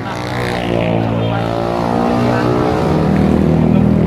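A loud motor vehicle engine on the road, its pitch rising and then falling as it speeds up and goes past.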